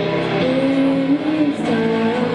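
Live electric guitar music played through an amplifier, with long held notes that step and slide to new pitches every half second or so.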